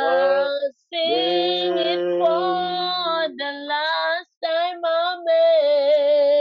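Female voices singing long, wordless held notes in harmony, with short breaks between the phrases.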